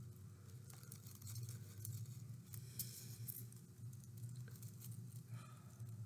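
Faint rustling and crinkling of construction paper being handled as a curled paper strip is wrapped around a paper stem, over a low steady room hum.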